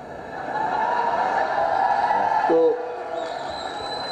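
A hall audience applauding, swelling over the first second and dying away about two and a half seconds in as a man's voice resumes.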